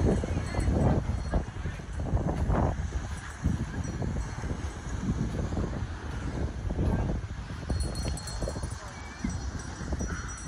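Footsteps in soft sand and wind buffeting the microphone, uneven thumps and gusts, with indistinct voices in the background.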